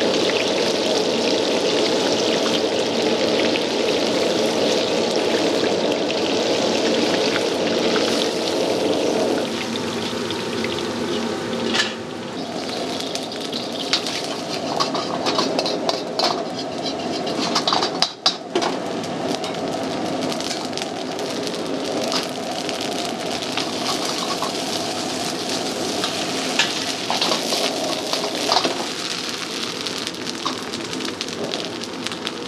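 Oil bubbling and sizzling steadily in a wok as battered squid pieces deep-fry. About a third of the way in the sound changes to stir-frying: sizzling with frequent sharp clanks and scrapes of a metal ladle against the wok as salted egg yolk is fried and the squid tossed in it.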